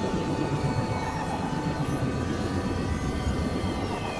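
Dense experimental noise and drone mix, several music tracks layered and processed into a steady rumbling wash. A single held tone sits over it for the first half, and a falling glide sweeps down near the end.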